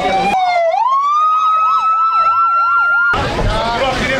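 Sirens of an approaching fire-service rescue vehicle: a fast up-and-down wail, about three cycles a second, over a steadier tone that slowly rises. The siren cuts off suddenly about three seconds in.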